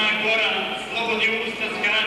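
A man's voice reciting aloud from a text.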